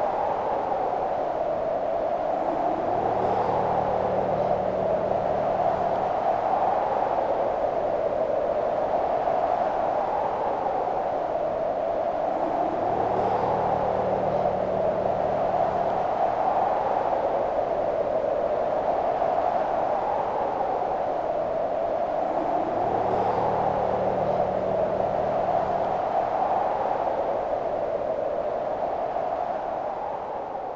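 An eerie droning soundtrack loop: a wavering, wind-like tone that swells and dips slowly, with a low hum and a rising swoop coming back about every ten seconds.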